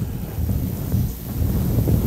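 Low, uneven rumbling noise on the microphone, with no pitch or rhythm to it.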